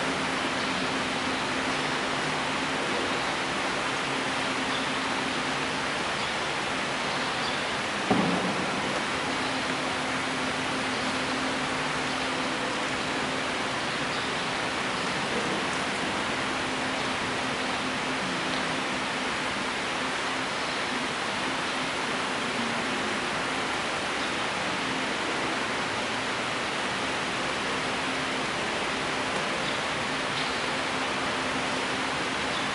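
Steady background noise in a quiet church: an even hiss with a faint steady hum, broken once by a single short knock about eight seconds in.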